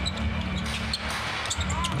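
Basketball arena crowd noise with a basketball being dribbled on the hardwood court, heard as a scattering of short sharp knocks.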